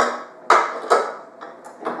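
A stainless steel mixing bowl clanking three times, about half a second apart, against the bowl-lift arms of a stand mixer as it is seated, each knock ringing briefly.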